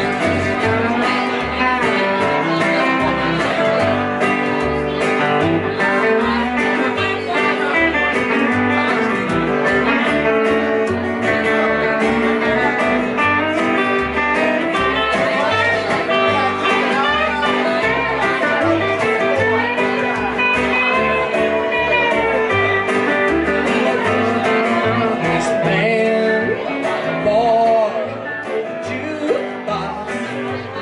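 Live country band playing an instrumental stretch without singing: electric guitar lines over a pulsing upright double bass and strummed acoustic guitar. The playing thins a little in the last few seconds.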